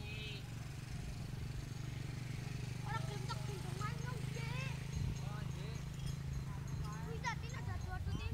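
Voices, with no clear words, over a steady low hum that stops shortly before the end.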